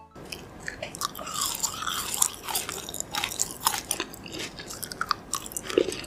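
Close-miked chewing of a soft, sugar-coated Yupi gummy peach ring: many small, irregular crackles and clicks as it is chewed.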